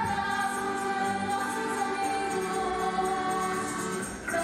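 A group of women singing together with music, holding long notes.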